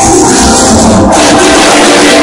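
Live band playing loud dance music through a PA system, with a steady low beat.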